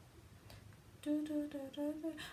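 A woman humming four short notes at a nearly even pitch, starting about halfway in after a moment of quiet.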